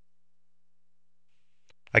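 Near silence with a faint steady hum, then a voice starts speaking at the very end.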